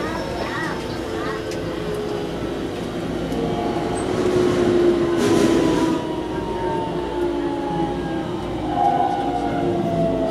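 Keikyu electric train slowing into a station: the motor whine falls steadily in pitch as it brakes, over steady wheel and running noise heard from inside the car. A brief hiss comes about five seconds in.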